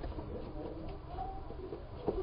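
A faint cooing bird call a little after halfway through, over a steady low rumble.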